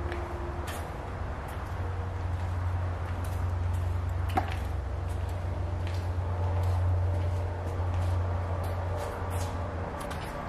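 A steady low hum fills the space, with faint footsteps on a hard floor about once a second and a sharper click about four and a half seconds in.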